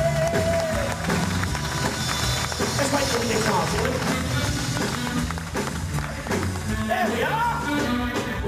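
Live pop-rock band playing with electric guitars, bass, drums and keyboard, with wavering melody lines over a steady low end.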